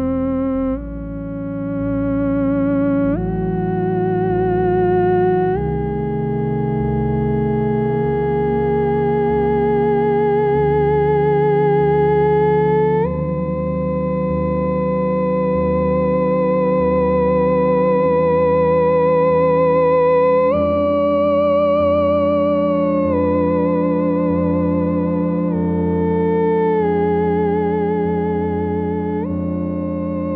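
Theremin played live: a slow melody of long held notes with a wavering vibrato, stepping up and down in pitch, over a steady low backing.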